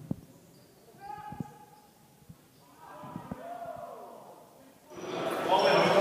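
Basketball bouncing on a hardwood gym floor as it is dribbled: a few separate bounces, with louder voices and court noise building near the end.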